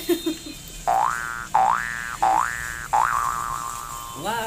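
Cartoon 'boing' sound effect repeated four times in quick succession. Each is a quick upward pitch sweep, and the last holds its top note.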